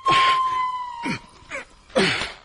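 Film soundtrack effects: a steady high tone that fades out about halfway, under several quick falling swooshes, one at the start, one about a second in and one at the end.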